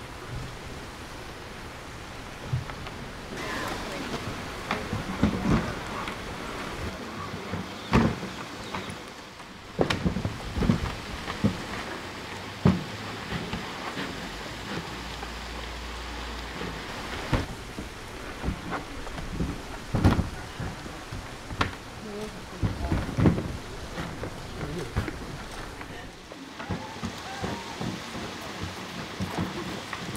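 Grizzly bear battering a Toter Bear Tough plastic wheeled trash cart: irregular hollow knocks, thumps and scrapes of plastic as the bear paws, pushes and rolls it, over the steady rush of a waterfall.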